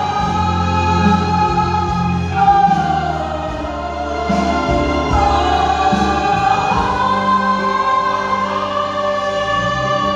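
Two women singing into handheld microphones over backing music, in long held notes that slide in pitch.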